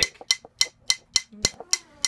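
Drumstick strokes played with finger motion as the stick bounces back: an even, steady run of sharp ticks, about three and a half a second.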